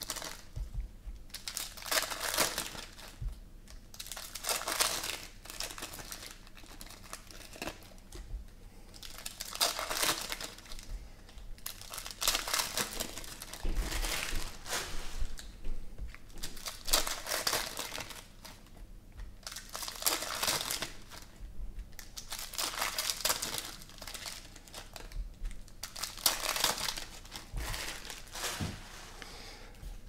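Foil wrappers of 2017 Panini Prizm Football card packs being torn open and crinkled by hand, in short bursts every second or two, with the cards handled and stacked in between.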